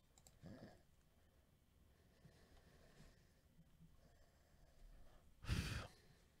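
Near silence: quiet room tone, with a faint short sound about half a second in and a brief, louder rush of noise about five and a half seconds in.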